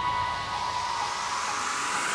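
A rising white-noise sweep in the build-up of a progressive house track. The bass has dropped out, and a held synth note fades away in the first second.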